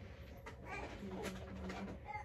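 A faint, low hummed voice held for about a second near the middle.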